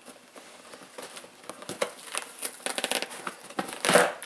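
Duct tape being peeled and torn off a cardboard box, an irregular crackling and ripping with cardboard rustling. The tearing comes thicker and louder in the last second or so.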